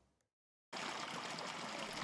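Water flowing steadily along a farm ditch into a rice paddy. It starts suddenly after a short silence, less than a second in.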